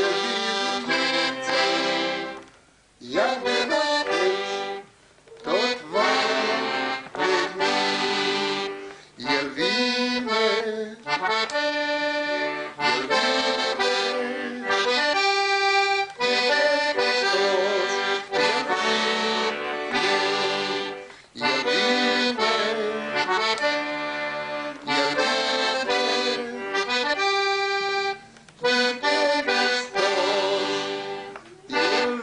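Piano accordion played solo: a hymn-like tune in phrases, broken by several brief pauses where the sound drops away.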